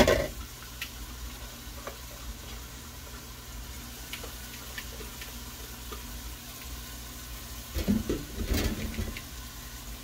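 Rice and vegetables sizzling quietly in a frying pan, a steady fine crackle, with a short cluster of louder knocks and clatter about eight seconds in.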